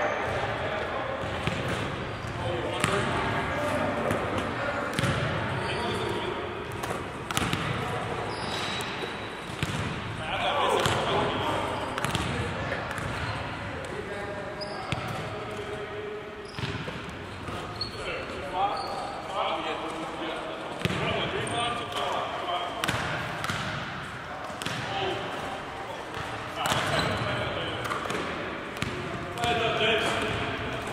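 Basketballs bouncing on a hardwood gym floor, a string of short thuds, with people talking and calling out over them throughout.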